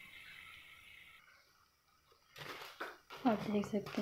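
Faint background hiss that drops to near silence about a second in. A few brief soft noises follow, then a woman starts speaking near the end.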